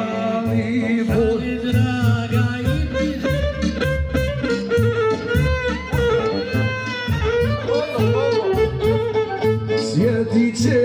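Live amplified folk music: a violin playing over a keyboard backing with a steady bass beat, and a man singing into a handheld microphone.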